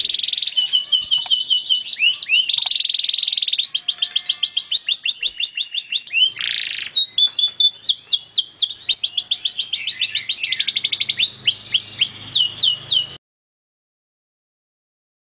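Male canary in breeding condition singing a long, loud song of rapid trills and quickly repeated sweeping syllables. The song cuts off suddenly near the end.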